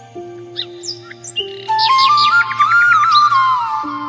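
Calm background music: a flute-like melody with sliding, ornamented notes comes in about two seconds in over long held low notes, with bird chirps mixed in.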